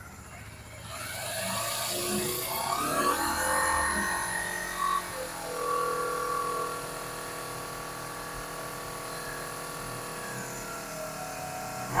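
Honda CBR250RR's parallel-twin engine being revved: its pitch climbs and falls over the first few seconds, then settles into a steady run.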